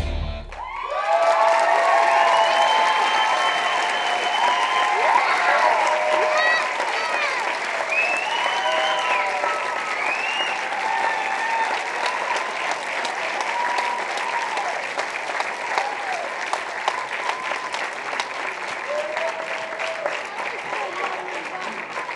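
Theatre audience applauding and cheering with shouts and whoops, breaking out as the dance music cuts off about a second in. The clapping is loudest in the first few seconds and slowly dies down.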